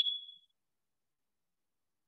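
A single short, high electronic notification ding, sharp at the start and fading away within about half a second.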